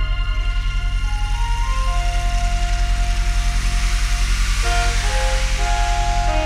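Synthesizer music: a rapidly pulsing low bass drone under held pad notes, with a short rising run of lead notes about a second in. A hissy wash swells in the highs through the middle and fades near the end.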